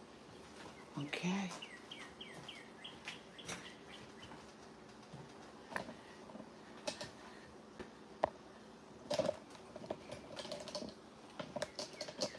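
A quick run of about ten short falling chirps, like a small bird, lasting about two seconds, followed by scattered light clicks and knocks of things being handled.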